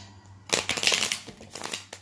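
Tarot cards being shuffled by hand: a quick run of papery flicks that starts about half a second in and lasts over a second.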